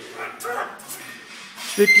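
Barbell back squat under a heavy load: a short, faint strained vocal sound about half a second in as the lifter goes down, then a loud shouted coaching cue starting near the end.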